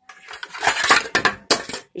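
Chrome metal hubcaps clinking and scraping against each other as one is lifted off a stack, with a sharp clank about a second and a half in.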